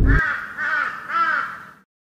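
Crow cawing sound effect: three harsh calls in quick succession, fading out near the end.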